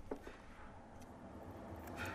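Quiet room tone with a low hum and a couple of faint clicks, one just after the start and one about a second in.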